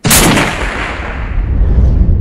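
A single loud sniper rifle shot right at the start: a sharp crack whose report rolls on as a long low rumble.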